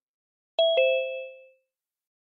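Two-note electronic notification chime from a computer, a higher ding then a lower dong a fifth of a second apart, each ringing out for about a second. It is most likely a Zoom meeting sound.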